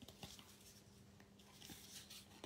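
Near silence, with a few faint light ticks and rustles of thin cardboard being handled and set onto a paper page.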